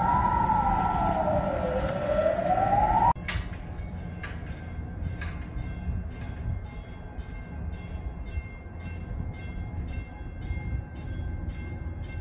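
A siren wailing slowly up and down, about one rise and fall every three seconds, alongside a steady higher tone and a low rumble. It cuts off abruptly about three seconds in, leaving a quieter background with faint regular ticking.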